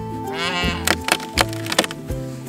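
Background music with held chords and regular percussive hits; about half a second in, a wavering high vocal note rises over it.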